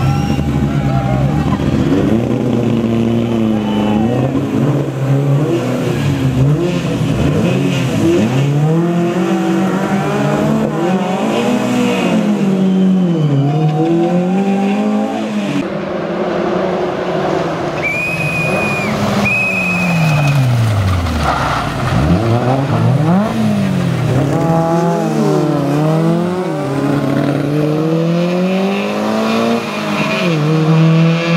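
Škoda 120S rally car's four-cylinder engine driven hard, its pitch rising again and again as it accelerates and dropping off between pulls.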